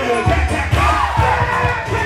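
Loud dance music with a heavy bass beat under a packed crowd shouting and cheering for a vogue performer.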